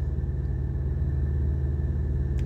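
Diesel engine idling, a steady low rumble heard inside a semi-truck's cab.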